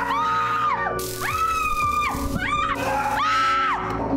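People screaming in fright: four long, high screams, each held for about a second, over background music.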